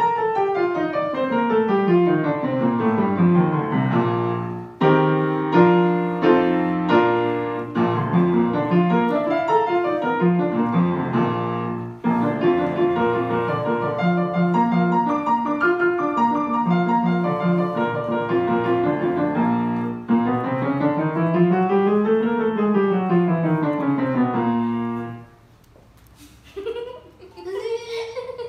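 Kawai grand piano played solo: quick scale runs sweeping down and back up, with passages of repeated chords in between. The piece ends about a second before the close.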